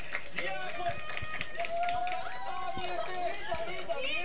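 Voices from a television broadcast, with one drawn-out voice about halfway through.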